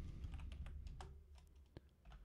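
Faint typing on a computer keyboard: a quick run of light key taps, ending in one sharper click near the end, as a command is entered in Rhino CAD software.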